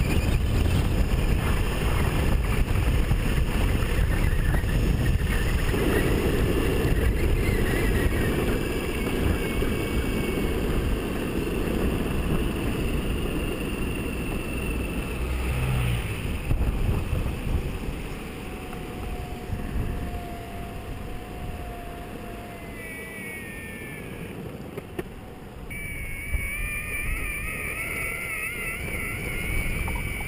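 Riding on an electric skateboard: wind buffeting the camera microphone over the rumble of the wheels on tarmac. The rumble eases a little past halfway, dips briefly, then picks up again, with a faint wavering whine near the end.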